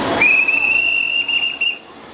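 A single steady high-pitched whistle tone, held for about a second and a half with a slight waver near the end before it fades.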